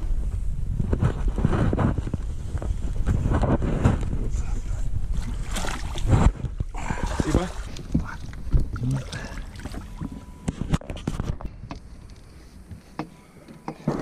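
Wind buffeting the microphone in an open boat as a fish is fought and netted. Scattered knocks and clicks of gear against the boat are heard, the sharpest about six seconds in and a cluster around ten seconds, along with low voices.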